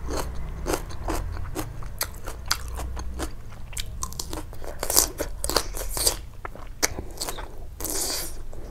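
Raw cucumber slices being bitten and chewed: a run of irregular crisp crunches, the loudest about five seconds in.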